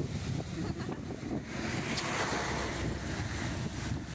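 Strong wind buffeting the microphone over heavy surf breaking and washing ashore, the hiss of the surf swelling up in the middle.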